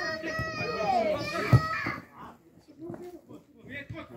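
A child's high-pitched voice calls out outdoors for about two seconds, with one sharp thump about a second and a half in, then fainter voices further off.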